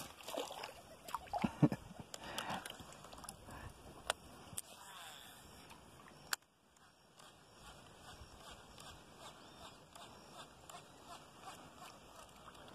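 Water splashing at the surface close by, several splashes in the first two and a half seconds, followed by a couple of sharp clicks and then only faint lapping.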